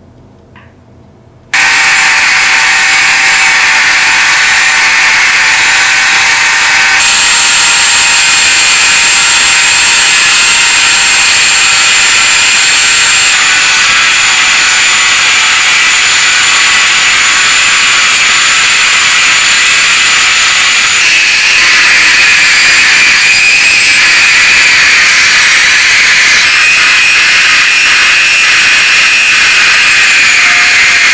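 A handheld electric rotary tool starts about a second and a half in and runs at high speed with a steady high whine, shifting pitch slightly a few times while it spins the brass lighter sleeve mounted on its mandrel.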